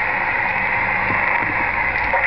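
Steady hiss of band noise from a Realistic HTX-100 10-meter SSB transceiver's speaker, cutting in sharply just as the transmitter is unkeyed and the receiver opens.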